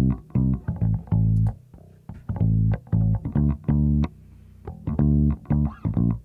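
Electric bass guitar track playing a line of separate plucked notes, with a short rest about four seconds in. The signal runs through a Neve-style channel strip plugin: preamp pushed, low cut at 80 Hz, a few dB added at 700 Hz, and 4:1 compression taking about 5 dB off.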